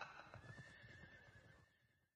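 A horse's hoofbeats and a whinny, faint and fading away.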